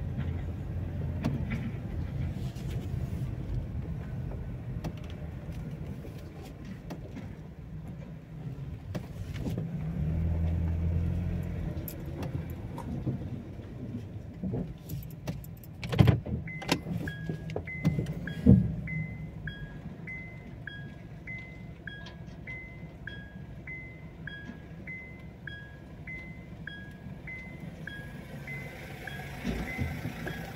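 Car engine idling with a low steady hum that swells briefly about ten seconds in. Two sharp knocks come a little past halfway, and then the turn-signal indicator starts ticking, a regular high tick–tock alternating between two pitches at about one and a third per second.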